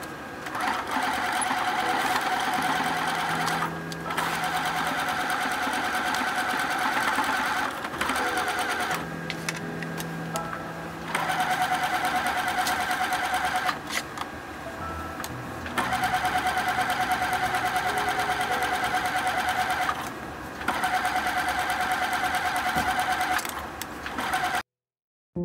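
Bernette B37 computerized sewing machine stitching through rib knit in several runs of a few seconds each, stopping briefly between them, the needle going in a fast, even rhythm.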